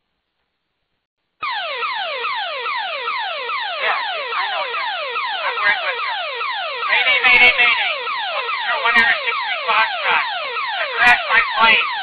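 Aircraft emergency locator transmitter (ELT) heard over the aviation radio: a swept alarm tone that falls in pitch again and again, about three sweeps a second, starting about a second and a half in after a gap of silence. It is the sign that the ELT has been set off by a crash.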